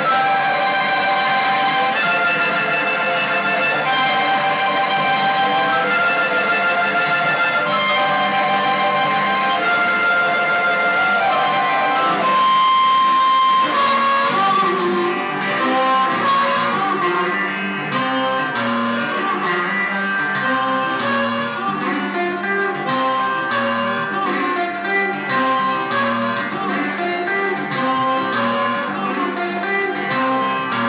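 Live blues harmonica playing a repeated riff over electric guitar, holding one long note about halfway through; after that the guitar picking comes forward in short, quick notes under the harmonica.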